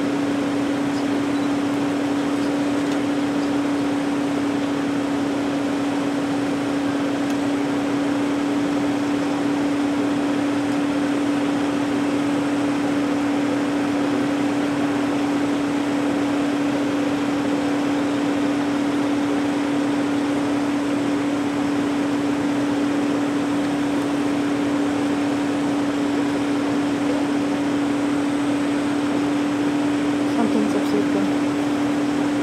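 Steady mechanical hum from a parked vehicle: one held low-mid tone over an even hiss, unchanging throughout.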